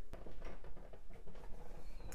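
Faint rustling and rubbing of a hand-held camera being moved, with a few small scattered ticks.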